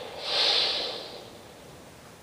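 A whooshing sound effect from a movie trailer's soundtrack, heard through a portable DVD player's small speaker: a single burst of noise swells up about half a second in and fades over the following second into a faint hiss.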